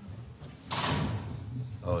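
A door: a single short burst of noise lasting about half a second, a little under a second in.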